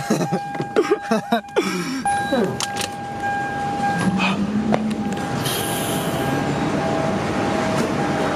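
A steady high electronic tone sounds throughout, with laughter and knocks of handling in the first two seconds as someone climbs out of a car.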